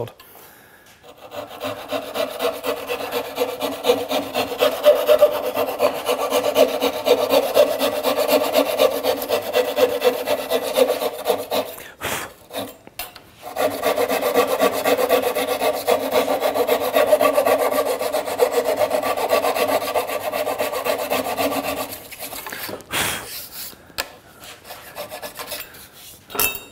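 Flush-cut saw cutting the protruding wedges off wedged through-tenons flush with the wood, in quick steady back-and-forth strokes. Two long bouts of sawing with a brief pause about twelve seconds in, then a few shorter strokes near the end.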